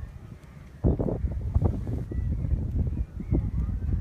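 Wind buffeting a phone microphone: an uneven low rumble with irregular bumps that starts about a second in. A few faint high calls sound above it.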